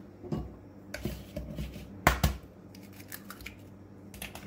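An egg knocked twice against the rim of a ceramic bowl and cracked open, with lighter clicks of shell and hands around it.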